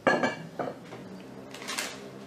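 Glazed Safi earthenware dishes knocking against each other as they are handled. There is a sharp clink with a short ring at the start, a lighter knock about half a second later, and a brief softer handling noise near the end.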